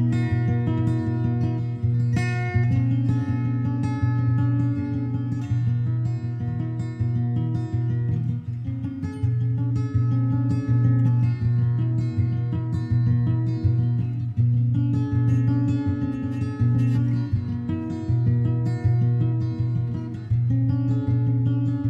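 Background music: an acoustic guitar plays a steady, repeating pattern of picked notes.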